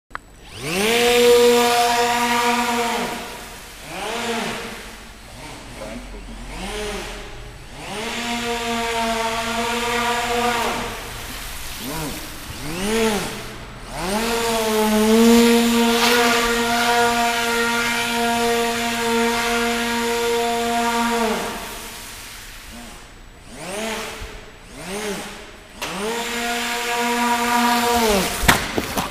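Geared Speed 400 electric motor of a radio-controlled hovercraft, whining as it spins the propeller. The throttle is opened and closed in repeated spurts, the pitch rising at each start and sliding down as it lets off, with one long steady run at full speed in the middle.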